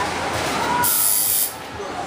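A short hissing spritz from a hand spray bottle, about a second in and lasting about half a second, over low voices.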